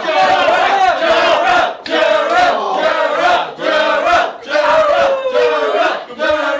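A small crowd of young people shouting and cheering together in loud repeated bursts, several voices at once, with one long falling shout near the end.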